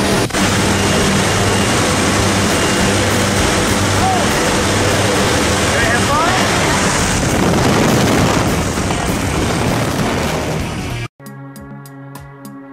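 Loud, steady drone of the jump plane's engines and rushing air in the cabin, growing a little louder about halfway through with the jump door open. It cuts off abruptly near the end, giving way to music with a drum kit.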